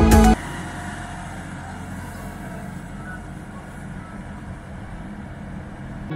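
Tractor engine running steadily as it tows a wagon of riders along a dirt track, with outdoor background noise.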